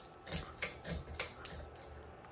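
Hunter ceiling fan giving a quick run of light mechanical clicks, about four a second and slightly uneven, as it starts to turn.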